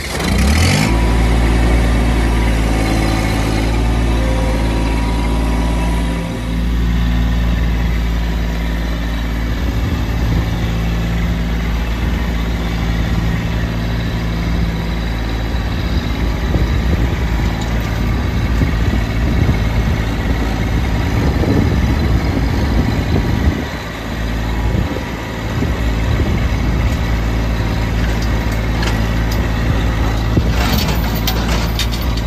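Compact tractor engine starting right at the beginning, then running steadily as the tractor is driven. The level dips briefly at about six seconds and again about two-thirds of the way through.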